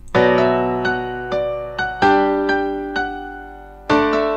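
Steinway Grand Piano software instrument in GarageBand playing back, processed through a FET Keyboards compressor: chords struck at the start, about two seconds in and again near the end, with single notes between, each ringing and fading. The piano sounds very dry, with little reverb.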